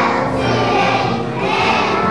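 A kindergarten children's choir singing together, with musical accompaniment.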